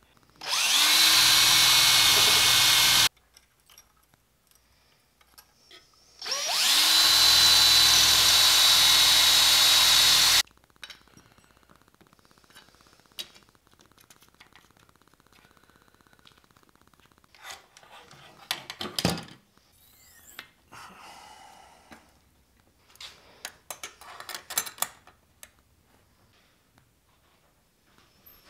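An electric power tool runs twice at a steady pitch, first for about two and a half seconds and then for about four, its motor spinning up at each start. Later come quieter clicks and rattles of metal hardware being handled.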